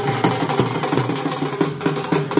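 Wedding band music: drums beating a fast, busy rhythm over a steady held melody.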